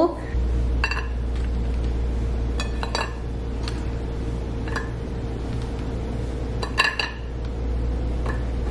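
A metal baking pan and a ceramic plate clinking as cookies are lifted out of the pan and set on the plate: about half a dozen light clinks that ring briefly, two close together near the end. A steady low hum runs underneath.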